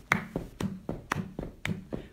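Rhythmic percussive beat of a camp song's accompaniment between sung lines: an even run of sharp taps, about four a second, with short low notes under them.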